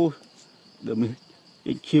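Steady high-pitched insect drone, with a man's voice speaking a few short words over it.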